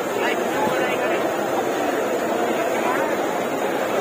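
Jalebi deep-frying in a large wok of hot oil: a steady, dense sizzle.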